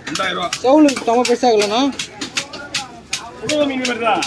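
Sharp knife strokes on a fish on a wooden cutting block, about three or four a second, under a voice talking.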